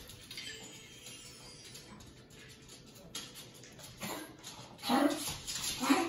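Quiet room tone, then two short coughs near the end.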